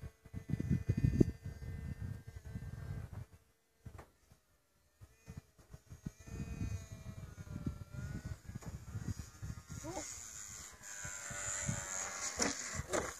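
Gusts of wind buffeting the microphone, with the whine of a small electric RC model jet's motor wavering in pitch as it flies. Near the end the whine grows louder and higher as the jet passes close.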